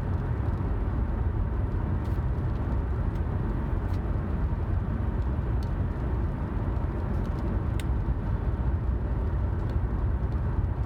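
Steady low rumble of a car driving down the road, heard inside its cabin, with a few faint ticks.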